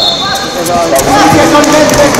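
Voices shouting in a large, echoing hall, with scattered dull thuds and slaps from wrestlers grappling on a mat.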